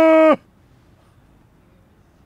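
The end of a steady car horn blast, one flat tone that cuts off sharply about a third of a second in.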